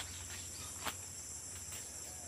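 Steady high-pitched buzz of insects in the undergrowth, with a faint click near the start and another a little under a second in.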